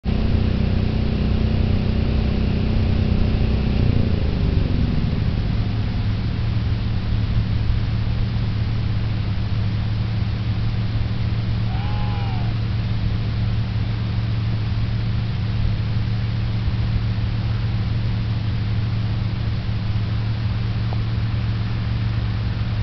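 A steady low engine hum running at an even pitch. A higher engine tone over it slides down and dies away about four to five seconds in. A brief pitched sound that rises and falls comes around twelve seconds.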